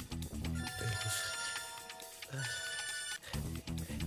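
Mobile phone ringtone ringing in repeated bursts over background music.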